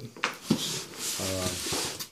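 A cardboard box set down on a countertop with two light knocks, then hands rubbing and patting over the cardboard, with a short voiced 'uh' partway through.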